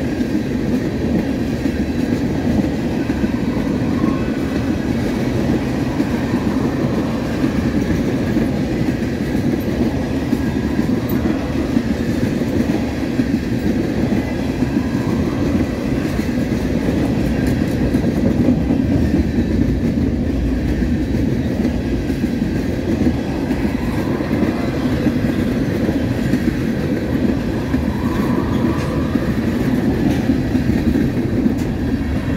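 Norfolk Southern mixed manifest freight train's tank cars and covered hoppers rolling past, steel wheels running on the rail with a steady, unbroken rumble.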